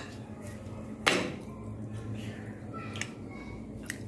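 Metal forks clinking and scraping against ceramic plates as cake is eaten: a few short, sharp clinks, the loudest about a second in, over a faint steady hum.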